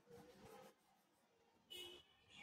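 Faint scratching of a colour pencil shading on paper, a run of strokes in the first part. A short, brighter scrape comes near the end.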